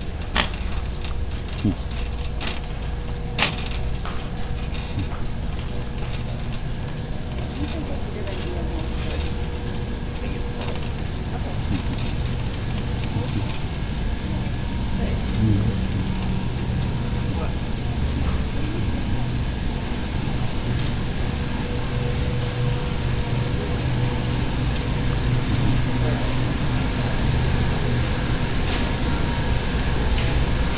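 Shopping cart pushed across a store floor, a steady low rumble from its wheels and frame, with a couple of sharp clicks in the first few seconds and faint store background noise and voices.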